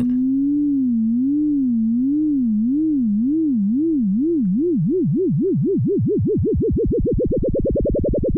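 A single sine tone from an Absynth 5 FM synth oscillator, its pitch wobbling up and down as the sine modulator is sped up. The wobble goes from about one swing a second to about ten a second, each swing wider than the last. This is frequency modulation at a rate below hearing, heard as a vibrato on one note.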